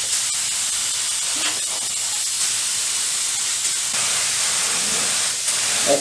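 Gravity-feed compressed-air paint spray gun spraying, a loud, steady hiss that starts abruptly as the trigger is pulled. The gun is partly clogged and spitting chunks of paint onto the part.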